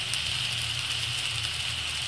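Chopped onions and green chillies sizzling steadily in oil in a frying pan, over a steady low hum.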